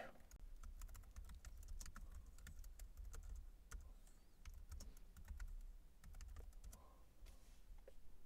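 Faint typing on a computer keyboard: irregular key clicks.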